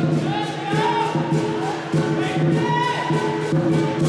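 Southern lion dance band of drum, gong and hand cymbals playing a fast, steady beat, the gong ringing underneath. A wavering, voice-like high tone rises and falls over the percussion.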